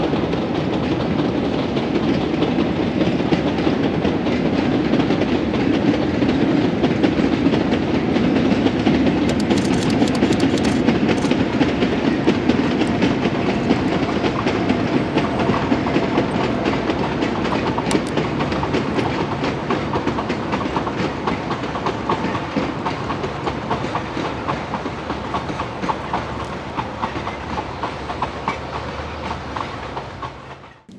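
Narrow-gauge diesel-hauled freight train passing: the locomotive's engine running under load, then the wagons' wheels clattering over rail joints. The sound is loudest about a third of the way in and eases off as the last wagons go by.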